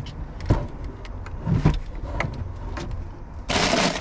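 Clicks and knocks as the lid of a portable car fridge-freezer is opened and handled, over a steady low rumble. Near the end a plastic bag of frozen vareniki is pulled out and crinkles loudly.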